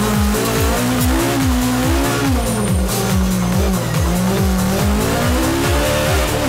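Volkswagen Golf Kit Car rally car's engine held at high revs, heard from inside the cabin, its note wavering a little. It is mixed with electronic music that has a fast, regular thudding beat.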